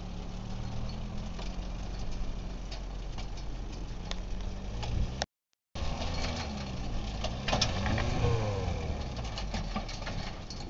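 Four-cylinder Dacia car engine of a home-built tractor running steadily; the sound cuts out for about half a second halfway through, after which the engine's pitch rises and falls a few times as it is revved or put under load.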